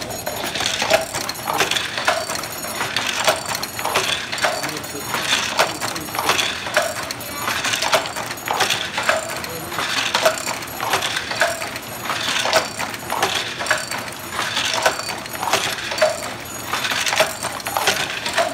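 Wooden handloom in steady use: a rhythmic run of wooden clacks and knocks, roughly one a second, as the shuttle is sent across the warp and the batten beats each weft thread into the cloth.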